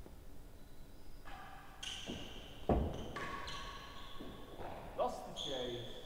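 Shoes squeaking on the indoor court floor, with one sharp, loud knock about three seconds in: the hard ball being struck. A brief voice comes in near the end.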